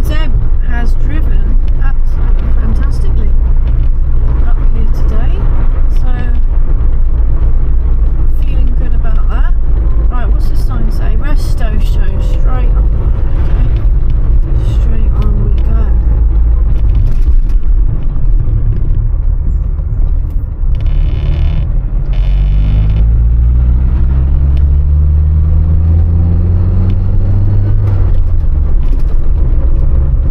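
Inside the cabin of an Austin Allegro 1500 Estate on the move: a steady low engine and road rumble, with two short high-pitched buzzes about two-thirds of the way in. The engine note then climbs steadily for several seconds as the car accelerates in gear, and drops back near the end.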